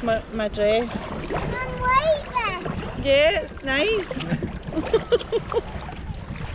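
High-pitched cries of "oh!" and laughter, with a quick run of short repeated yelps a little before the end. Underneath is the wash of choppy water and paddle splashes against a kayak.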